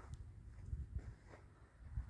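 Quiet outdoor background: a faint low rumble with a few soft clicks.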